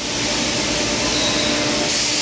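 Steady machinery noise on a tire retreading shop floor: a constant hiss with a low hum running under it.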